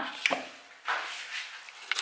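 Kitchen handling noises as a bowl is moved about on a marble counter: a light knock just after the start, a brief scraping rustle about a second in, and small clicks near the end.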